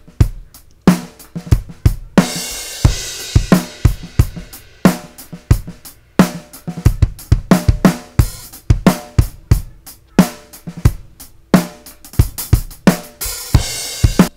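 Playback of a multitracked acoustic drum kit: a steady groove of kick drum, snare and hi-hat, with crash cymbal hits about two seconds in and again near the end.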